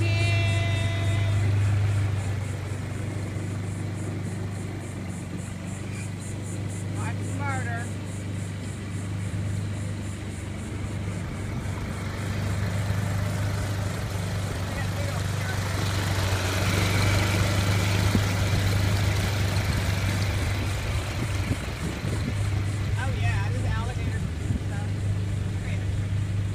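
Suzuki 4 hp four-stroke outboard motor running at a steady speed, pushing a small sailboat along, a constant low hum. A broad hiss swells over the middle.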